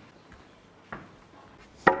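Snooker shot: a faint click about halfway through, then a loud, sharp click of ball striking ball near the end.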